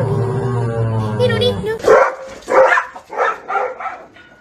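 A sung voice with music, cut off about two seconds in, then a dog barking about five times in quick succession.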